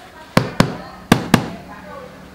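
Four sharp knocks in two quick pairs: a wooden-handled rubber stamp being struck down hard on the table.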